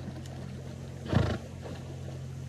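A swimming horse blowing out hard through its nostrils once, a short loud burst about a second in.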